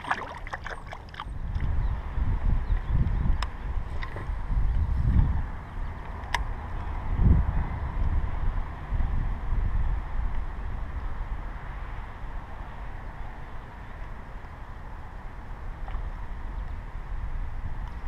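Wind buffeting the microphone in uneven gusts, a low rumble that swells and fades. Near the start there is a short water splash as a released bass kicks away, and later two faint sharp clicks.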